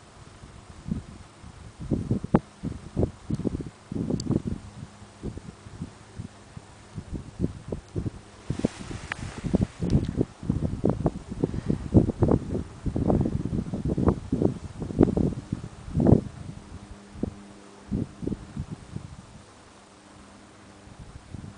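A breeze buffeting the microphone in irregular low thumps, with grass rustling and a brief rush of hiss about nine seconds in.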